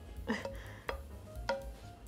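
Wooden spoon scraping and knocking in a metal saucepan as a thick, sticky cooked fig mixture is worked and spooned out, with two sharp knocks about a second in and half a second later.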